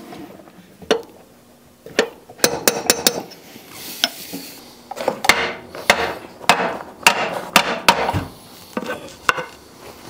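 Hammer taps on the input shaft bearing of a Ford 4000 tractor, sharp metal-on-metal strikes with a short ring. They come a few at a time early on, then in a quicker irregular run for several seconds. The bearing is being driven back along the shaft to free it from its retainer plate.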